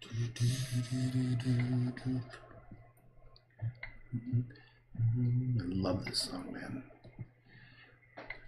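A low man's voice humming held notes in short phrases, with a few light clicks in the gaps between them.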